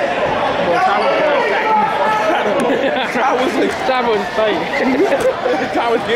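Many people talking at once in a gymnasium crowd, a steady hubbub of overlapping voices.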